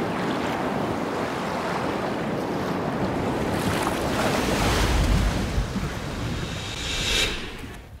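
Sea waves washing, swelling about halfway through and again near the end, then fading out.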